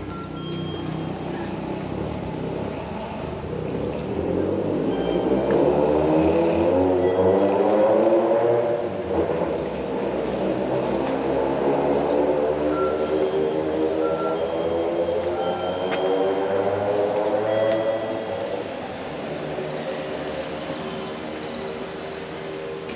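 A vehicle pulling away: its engine note climbs for several seconds, drops back about nine seconds in, then climbs again more slowly and fades.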